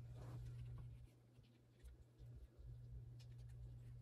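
Faint rustle of hands handling an open paper journal and its cord bookmark, with a few light ticks about three seconds in, over a steady low hum.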